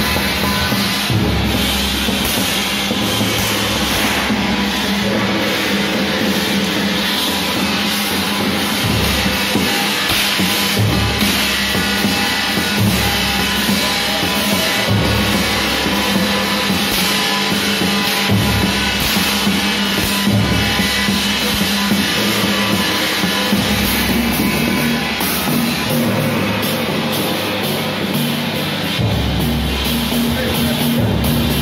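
A Chinese temple drum beaten with wooden sticks together with a clanging brass gong, a loud, continuous percussion beat.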